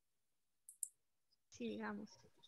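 Two short, sharp clicks in quick succession, a little under a second in, over an otherwise silent call line, followed by a man saying "Okay."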